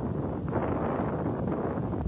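Wind buffeting the microphone aboard a moving small boat, a steady rough rumble that cuts in suddenly.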